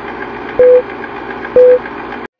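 Film-leader countdown sound effect: a short beep once a second, twice, over a steady hiss.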